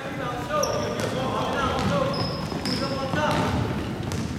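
A basketball dribbled on a hardwood gym floor, with sneakers squeaking sharply a couple of times, amid players' and spectators' voices echoing in the gym.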